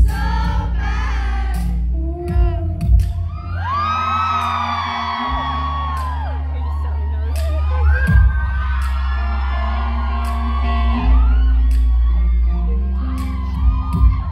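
A rock band playing live in a club, with heavy sustained bass notes, regular drum hits and electric guitar. A crowd of fans screams and cheers over the music, loudest from about four seconds in.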